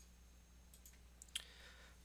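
Near silence: faint room tone with a low hum, broken by one faint short click a little past halfway.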